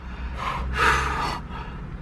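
A man's breathy gasp lasting about a second, starting about half a second in, over a low steady hum.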